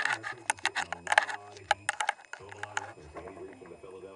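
Indistinct talking close to the microphone, with a rapid run of sharp clicks and knocks over the first three seconds as the camera is swung about and handled.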